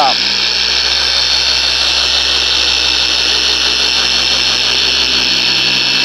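Electric dual-action (oscillating) car polisher running steadily with a foam pad buffing polish on car paint: an even motor hum with a high whir and no change in speed.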